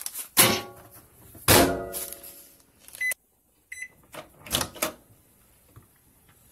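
Microwave oven being shut and its keypad used. Two loud clunks from the door come first, then two short high beeps as buttons are pressed, followed by a few more knocks near the end.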